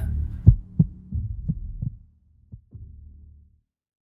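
Heartbeat sound effect: pairs of low thumps, about one pair a second, over a low hum, growing fainter and stopping about three and a half seconds in. It serves as a suspense cue in a radio drama.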